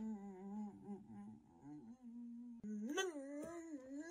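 A man humming a slow tune in a low voice, in long held notes that waver. The humming breaks off briefly about two and a half seconds in, then comes back with a rise in pitch.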